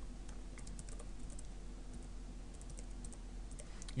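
Typing on a computer keyboard: light key clicks in two short runs, with a pause in the middle.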